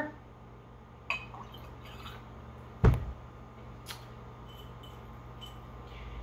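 Glass jars of muddy paint being handled on a tabletop: a light click about a second in, a single solid knock about three seconds in, then a few faint clinks.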